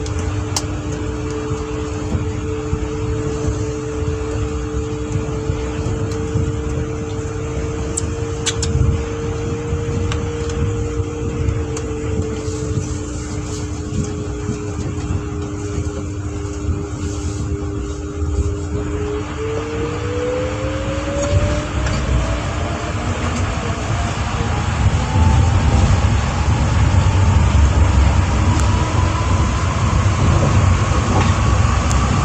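Cabin running sound of a New Shuttle 1050-series rubber-tyred guideway train: a low rumble under two steady motor tones. About two-thirds through, one tone starts a rising whine and the running noise grows louder as the train picks up speed.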